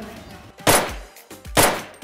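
Two gunshots about a second apart, each a sharp crack with a short fading tail.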